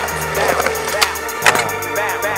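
Hip hop music with a skateboard rolling on concrete, and two sharp clacks about a second apart near the middle.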